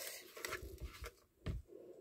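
Faint rustling of fingers crumbling and spreading potting soil in a small plastic pot, with a soft thump about a second and a half in.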